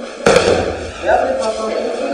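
A thrown person landing on a gym mat in a breakfall: one sharp impact about a quarter second in, with a short low rumble after it.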